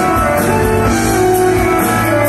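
Live rock band with a string orchestra playing an instrumental passage: guitars and drums over sustained notes, with a steady beat.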